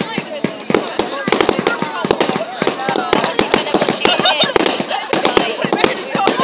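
Fireworks display: a fast, dense run of sharp bangs and crackles as a barrage of comets shoots up, with a crowd talking.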